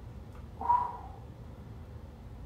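A man's short, strained breath out, voiced like a low grunt, once just under a second in, as he holds an arched push-up position under effort. A steady low room hum lies underneath.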